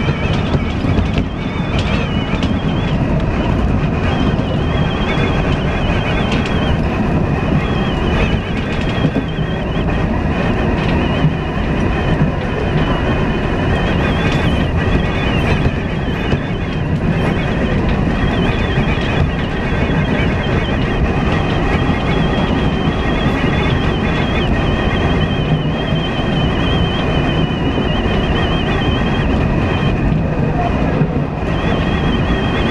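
Electric commuter train running at speed, heard from inside the leading car: a steady rumble of wheels on rail with a thin high whine running through it.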